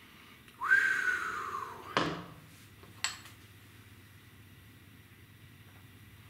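A man's whistled, breathy "whew" exhale that jumps up in pitch and then slides slowly down, a reaction to the heat of a reaper and scorpion pepper hot sauce. It ends in a sharp puff of breath, and a small click follows about a second later.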